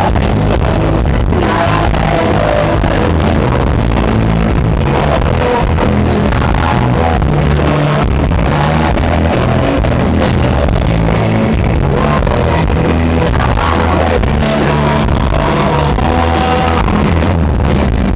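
Live pop-rock band playing loud and steady, with drums, electric guitar and keyboard under a man and a woman singing into microphones.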